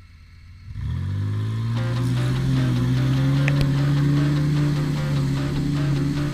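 A 4x4 engine revs up about a second in and holds steady high revs as the vehicle drives through deep mud and water. Rock music with a regular beat comes in underneath about two seconds in.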